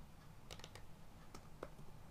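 Faint computer keyboard keystrokes: separate clicks in a short run about half a second in, and a few more around a second and a half in.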